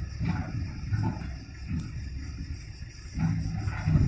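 Heavy construction machinery running: a low, uneven diesel rumble, with a steadier engine hum swelling about three seconds in.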